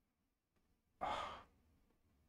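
A man's single sigh, a short breath out into a close microphone about a second in, starting suddenly and fading within half a second.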